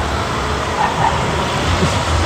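A car passing on the road close by: steady engine and tyre noise with a low rumble.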